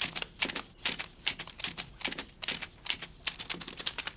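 A quick, irregular series of sharp clicks and snips, a few a second, from a small handheld office tool working the paper of a notepad on a desk.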